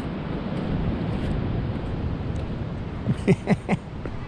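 Steady wind and surf noise on the microphone. About three seconds in, a man gives four quick voiced sounds in a row, a short chuckle.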